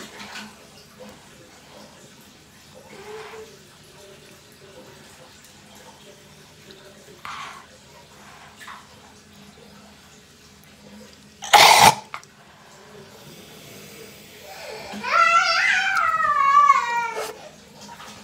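A person gagging while flossing the tongue far back: one short, loud cough-like burst about two-thirds in, then a high, wavering voice-like sound near the end that falls in pitch as it stops. Faint background sound of the rest of the time.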